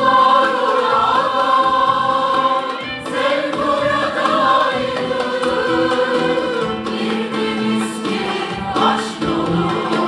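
Mixed choir singing a Turkish art music song, accompanied by a traditional ensemble of plucked and bowed strings, clarinet and frame drum.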